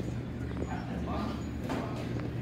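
A few short high-pitched vocal sounds that rise and fall, over a steady low hum.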